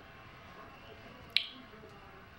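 Quiet room tone, broken once about a second and a half in by a single short, sharp click.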